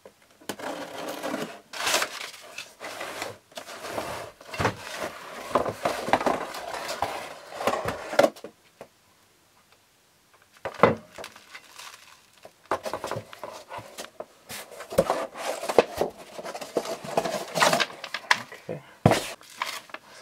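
Unpacking sounds: scissors cutting packing tape on a cardboard box, then cardboard, crinkling bubble wrap and packing paper handled as a long slider rail is drawn out, with scrapes and small knocks. A couple of seconds of near silence break it about halfway.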